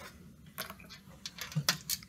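A quick run of light clicks and taps as plastic magnetic letters are pulled off and set onto a metal tray.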